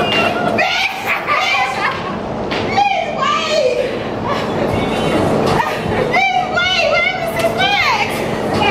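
Several women's voices shrieking and shouting excitedly over one another, with high, swooping squeals of surprise.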